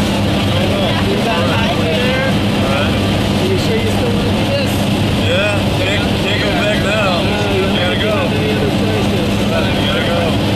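Steady drone of a jump plane's engines heard inside the cabin in flight, with people's voices talking over it.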